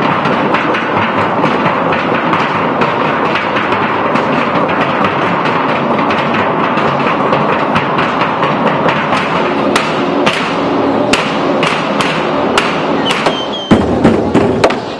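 Percussion troupe drumming on metal barrels with sticks, a dense fast run of strikes. In the last few seconds it thins to separate, harder hits.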